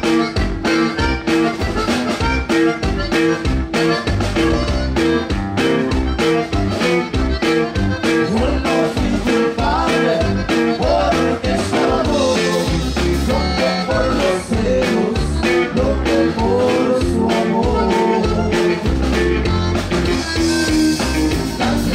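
Live conjunto band playing an up-tempo number: a button accordion carries the melody over a bajo sexto and a drum kit keeping a steady, even beat.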